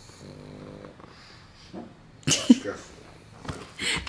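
A sleeping dog snoring: a low, steady snore early on, then a sudden louder burst a little past halfway and another short one near the end.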